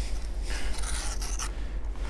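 A hand raking and rubbing through a pile of dug-up wet beach sand, feeling for a detected coin. There is a scratchy rustle from about half a second in to about a second and a half in, over a steady low rumble.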